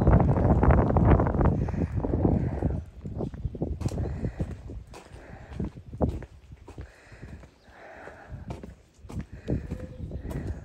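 Footsteps crunching on wet gravel, loud and dense for the first three seconds, then quieter separate steps.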